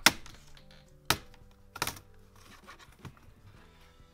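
Plastic retaining clips of an HP 15 laptop keyboard snapping loose as the keyboard is pried up: three sharp clicks about a second apart, then a fainter one.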